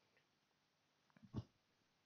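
Near silence: room tone in a pause of narration, broken by one brief faint sound about a second and a half in.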